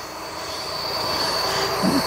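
A water-fed brush scrubbing wet solar panels, a rushing wash of water and bristles on glass that grows gradually louder. A thin, steady high-pitched tone runs through it.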